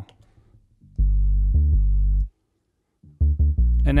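Synth bass line playing in deep, low notes with its top end cut away, a processed low-end loop under a gentle high-cut filter. A sustained phrase starts about a second in and stops, then a run of short rhythmic notes follows near the end.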